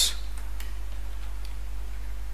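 A few faint, scattered computer keyboard keystrokes, over a steady low electrical hum.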